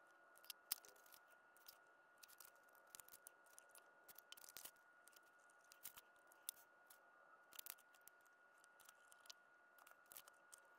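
Faint, scattered small clicks and ticks of a gel pen and stickers being handled on planner paper, over near silence with a faint steady high hum.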